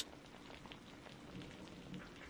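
Faint background ambience: a steady, even hiss with a light crackle.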